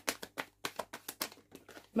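A deck of tarot cards being shuffled by hand: a quick run of soft clicks, about five a second at first, then sparser and fainter toward the end.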